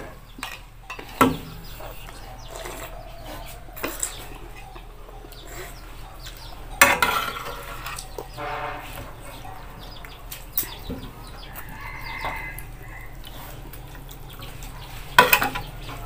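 Metal spoon clinking and scraping in a metal cooking pot, with a few sharp clinks, the loudest about seven seconds in. A couple of short calls sound in the background.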